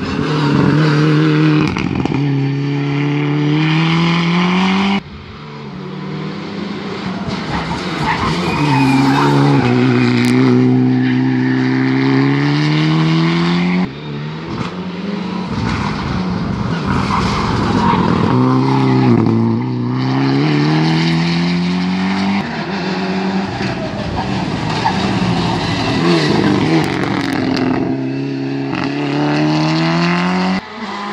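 Rally cars taking a tight hairpin one after another: each engine slows for the bend, then revs hard and climbs in pitch through the gears as it accelerates out, with tyres squealing at times. The sound breaks off abruptly twice as one car gives way to the next.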